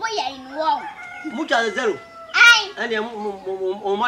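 A man and children talking back and forth, with one brief loud cry about two and a half seconds in.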